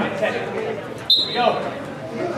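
A referee's whistle blows one short, shrill blast about a second in, restarting the bout, over voices in the hall.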